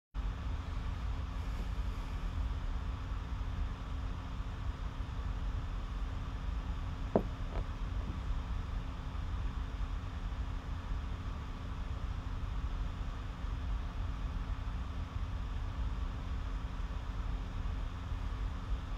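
Steady low background rumble with a faint hum, broken by two short clicks about seven seconds in.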